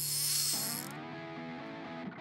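Logo sting sound effect: a bright, hissing sweep over background music that cuts off sharply about a second in, leaving the music's sustained tones.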